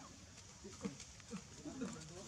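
Macaque monkeys giving several short, low calls that bend in pitch, with a few sharp taps of movement among them.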